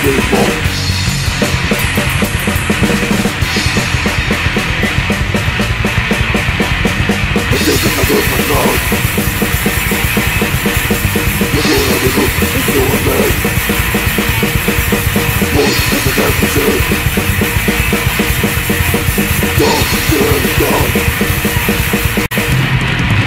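Hardcore punk band playing fast and loud: driving drum kit with distorted guitars and bass.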